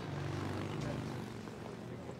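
Steady low hum of bar background ambience, with a faint murmur of voices.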